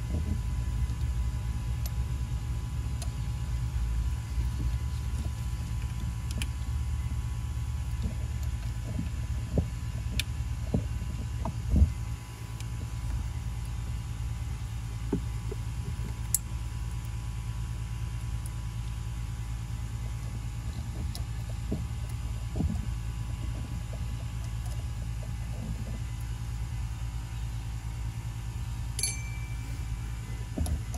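Steady low background rumble, with scattered light clicks and taps from parts being handled at the open engine. The sharpest tap comes about twelve seconds in.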